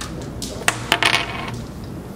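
Carrom break shot: the striker is flicked into the packed centre cluster of carrom men, giving a sharp crack and then a quick clatter of clicks as the men scatter across the board about a second in.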